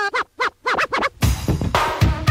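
Turntable scratching in a 1980s dance mix: a pitched sample is dragged back and forth in short strokes that slide up and down in pitch. A full drum beat drops in just after a second.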